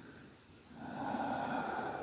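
A person's audible breath, a noisy swell that rises about two thirds of a second in and lasts about a second before easing off.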